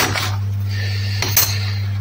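Loose metal hand tools clinking on a workbench as a hand rummages among them: a clink right at the start and two more close together about a second and a quarter in, over a steady low hum.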